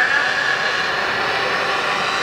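Steady background noise of an open-air gathering with a loudspeaker system. The echo of the man's amplified voice dies away just after the start.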